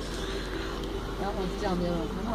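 Steady low hum of a truck's engine, heard from inside the cab, with faint voices talking quietly over it.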